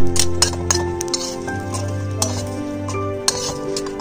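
A flat metal spatula clinking and scraping against a metal kadai as roasted green chillies and garlic are turned and lifted out. The sharpest clink comes right at the start and a few more follow over the first second, all over steady background music.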